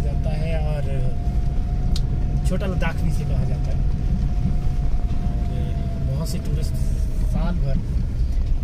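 Vehicle driving on a snow-covered road, heard from inside the cabin: a steady engine and road rumble with a steady high whine running through it, and a few brief fragments of voice.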